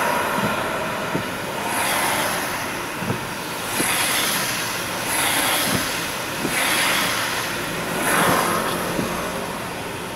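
Car windscreen wipers sweeping rain off the glass, a swish that swells and fades about every one and a half to two seconds, over the hiss of tyres on a wet road, heard from inside the car. A few short light knocks fall between the sweeps.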